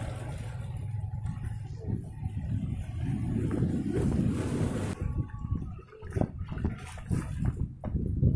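Wind buffeting a phone's microphone as an uneven low rumble, with sea surf on a rocky shore behind it. A few short knocks come in the last couple of seconds.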